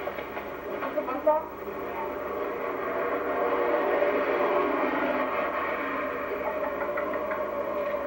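Indistinct, muffled voices over a steady outdoor rumble that grows a little louder about three seconds in, all heard as a camcorder soundtrack played back through a small TV's speaker.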